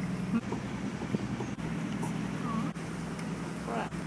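Houseboat engine running steadily on board, a low even hum that grows a little louder after about a second and a half.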